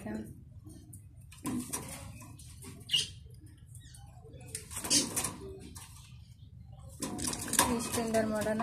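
A caged pigeon fluttering its wings against the cage wire in several short flurries, the longest about five seconds in.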